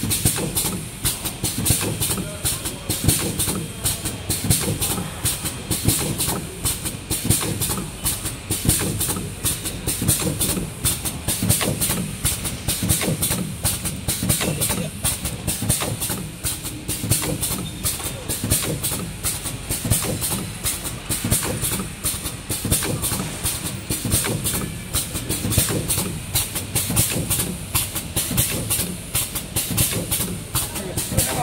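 Four-side-seal alcohol wipe packaging machine running: a fast, steady, repetitive mechanical clatter with a pulsing hiss.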